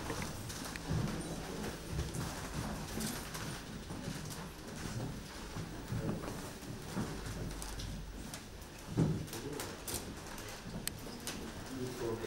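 Camera shutters clicking now and then over a low murmur of voices in a room, with a few clicks close together about nine seconds in.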